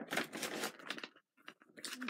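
Rustling and crinkling of trading-card packaging being handled, with a short run of crackles in the first second, a brief pause, then more rustling near the end.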